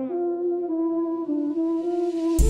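Rap beat instrumental with the drums and bass dropped out, leaving a sustained flute lead that moves through a few long held notes in A minor. A rising hiss swell builds under it toward the end, leading back into the beat.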